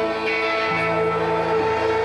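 Live rock band playing, with electric guitars to the fore in a steady, sustained passage.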